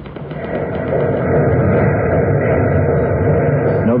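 Factory assembly-line machinery sound effect: a dense, rapid mechanical clatter that swells up over about the first second and then runs steady. It comes through an old, narrow-band broadcast recording.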